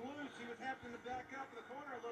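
Faint speech from a television broadcast: a commentator talking quickly over the race coverage, heard through the TV's speaker.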